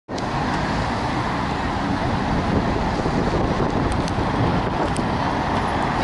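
Steady city traffic noise from cars driving past, with a few faint clicks.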